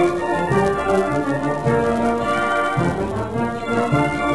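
Military brass band playing a Brazilian dobrado march, brass carrying the melody in held notes over a bass line.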